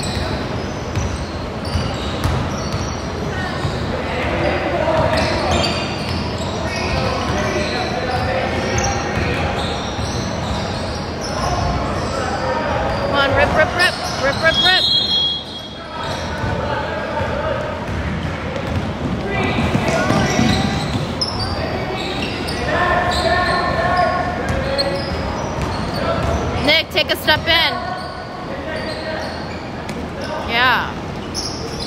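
Basketballs bouncing on a hardwood gym floor during play, with players' voices and shoe squeaks echoing in the large hall.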